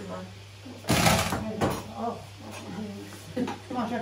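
Women talking in a kitchen, with one short, loud knock about a second in from kitchen things being handled at the counter.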